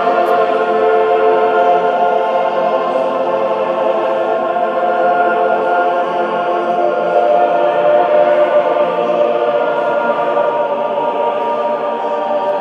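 A choir singing long held chords, many voices layered into a steady, slowly shifting wash of sound.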